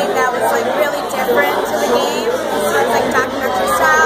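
Many people talking at once: steady, overlapping crowd chatter at a party.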